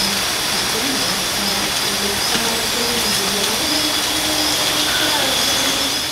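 Loud, steady hiss, with a faint chanted song wavering underneath it.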